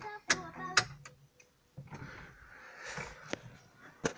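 Two sharp clicks as the ignition key of a New Holland T6010 tractor is turned off, with the engine's low hum dying away about a second in and the cab going nearly silent. Rustling handling noise and one more click follow.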